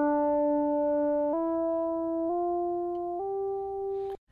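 A synth tone sliding smoothly up in pitch, run through Antares Auto-Tune 5 set to a major scale, so it comes out as separate notes rather than a glide: the pitch jumps up four times, about once a second, holding each note steady in between. The plug-in is snapping the slide to the nearest note of the scale.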